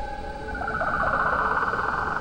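An eerie shimmering sound effect swells up about half a second in, with falling glints, over a steady ambient drone. It marks a hand passing through a ghostly figure.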